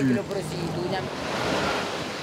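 Traffic passing on a wet road: a hiss of tyres on rain-soaked asphalt that swells about a second in and eases off again.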